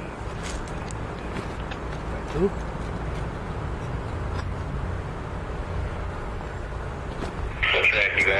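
Diesel freight locomotive approaching, a steady low engine rumble. Near the end a radio voice cuts in.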